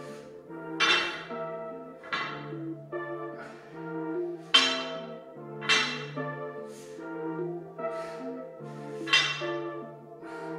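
Background orchestral music with brass: sustained chords over a low bass line, with strong accented hits a little over a second apart.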